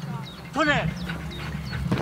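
A dog barking once, a single short bark about half a second in.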